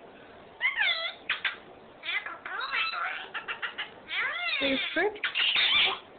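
Pet parrots, a ringneck parakeet and a cockatiel, chattering and calling: a string of whistly calls that swoop up and down in pitch, mixed with quick clicks. The calls grow louder and harsher in the last second or so.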